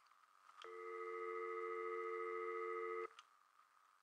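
Steady telephone dial tone, the two-note hum of a phone line, lasting about two and a half seconds before cutting off abruptly. It comes from the Freedom Alert base station during its system check, a sign that the line is connected and live.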